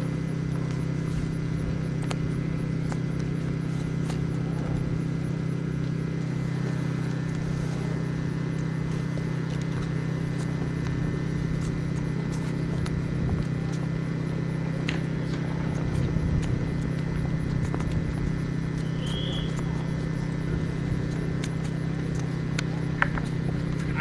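Faint hoofbeats of a pair of Lipizzaner horses trotting on grass while pulling a carriage, under a louder steady low hum.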